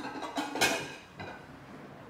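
A few soft knocks and rustles in the first part, the clearest a little past half a second in, then quiet room tone.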